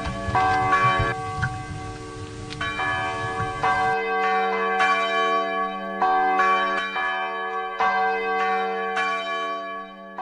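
Church bell tolling about once a second, each strike ringing on with many overtones. A low rumble sits under the first few strikes and stops about four seconds in, after which the bell rings clear.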